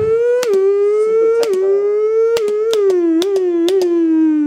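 Formula 2 car's turbocharged V6 engine running near the top of its rev range. The pitch climbs slowly, with a quick dip and crack at each gear change about once a second, then steps down in pitch near the end.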